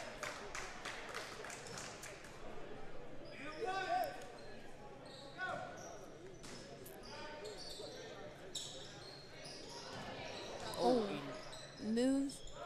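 A basketball being dribbled on a hardwood gym floor, with scattered voices echoing in a large gymnasium. The short bounces are thickest in the first few seconds.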